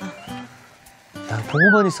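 Quiet background music. About halfway through, a voice rises in pitch and falls again in a drawn-out exclamation.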